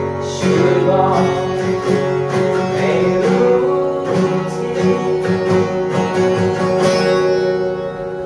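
Acoustic guitar strummed in steady strokes. A last chord is struck about seven seconds in and left ringing as it fades, closing the song.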